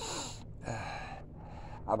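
A man's audible breathing: two breaths of about half a second each, one right at the start and one just before the middle, then speech begins near the end.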